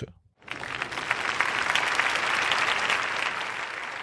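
Audience applauding. The clapping starts about half a second in after a brief silence, holds steady, eases slightly near the end and is cut off abruptly.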